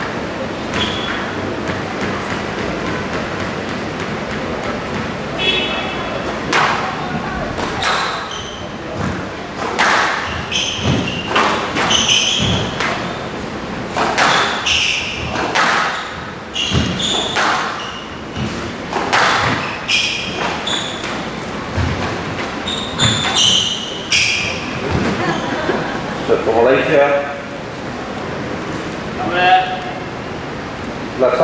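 A squash rally in a large hall: the ball is struck by rackets and slaps against the court walls in a string of sharp, irregular hits, mixed with high squeaks of shoes on the court floor. Voices murmur underneath.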